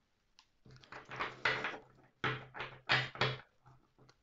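A deck of oracle cards being handled and shuffled: a quick run of papery rustling and slapping strokes.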